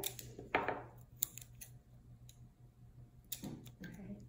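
Scissors snipping heat-resistant tape: a short rasp about half a second in, then a scattering of sharp little clicks and snips.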